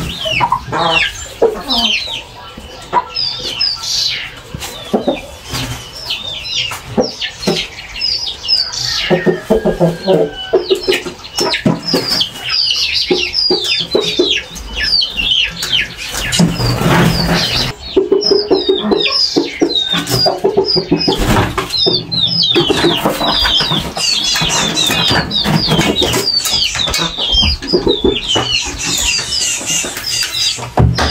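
Domestic chickens clucking, with wing flaps, against a constant chatter of short high chirps from small birds.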